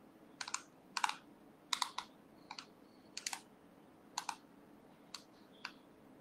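Computer keyboard keys pressed in short, irregular clusters: about eight groups of sharp clicks over six seconds, often in quick pairs, faint over a low room hum.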